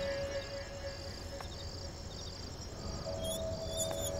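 Night ambience of crickets chirping in a steady, evenly pulsed trill, under a faint sustained music note that fades and returns softly about three seconds in. A few short high chirps come near the end.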